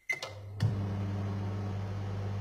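A microwave oven's keypad beeps once as Start is pressed, then about half a second later it clicks on and runs with a steady low hum.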